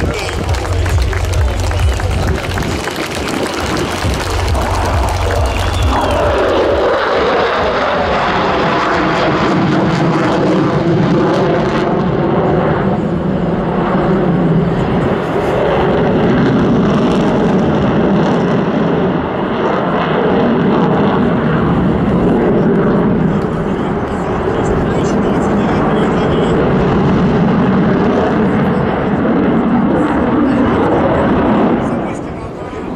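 Sukhoi Su-57 twin-engine fighter jet flying an aerobatic display, with loud continuous jet noise. The heavy low rumble drops away about six seconds in, leaving a rougher mid-pitched jet sound that rises and falls as it manoeuvres.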